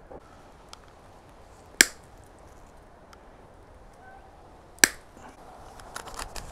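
Two sharp plastic snaps about three seconds apart, as the mounting tabs are cut off micro servos.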